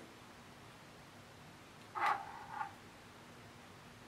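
Quiet room tone, broken about two seconds in by a short click with a brief ring and a smaller knock just after: drawing tools, a pencil and a metal compass, being handled on a tabletop.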